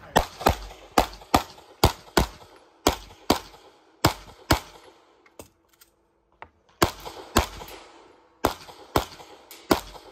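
Semi-automatic pistol shots fired rapidly, mostly in pairs about half a second apart, with a pause of about two seconds midway.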